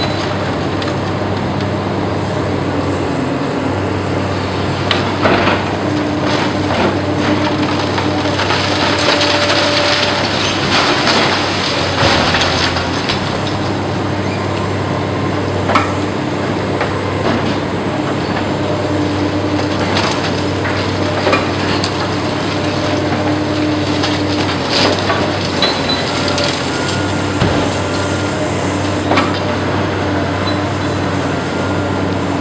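Hydraulic demolition excavator working a concrete building with its shear: the diesel engine and hydraulics run steadily, with tones that come and go under load, while concrete cracks, crunches and rubble clatters down in frequent sharp hits.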